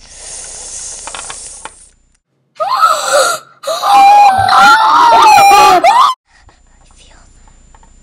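A hiss, then a short loud cry and a loud, long, high, wavering voiced note lasting about two and a half seconds, which cuts off suddenly.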